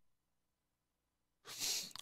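Near silence, then about one and a half seconds in a short, breathy intake of breath through the mouth lasting about half a second, just before speech.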